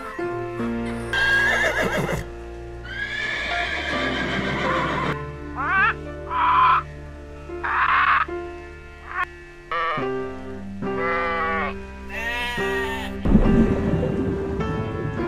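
Light background music with a simple melody of held notes, overlaid by animal calls dubbed onto the footage: a donkey braying in the first seconds, then short harsh squawks of macaws. A loud noisy burst comes near the end.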